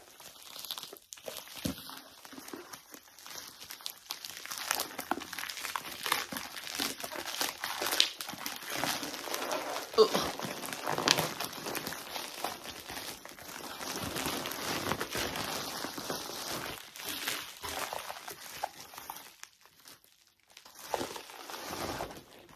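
Plastic mailing bag being torn open and handled, giving continuous irregular rustling and crinkling with sharp crackles, loudest around the middle.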